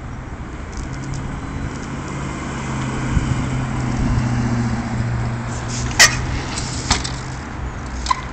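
A car driving past on the road, its engine hum swelling and then fading over several seconds. Near the end come two sharp knocks about a second apart.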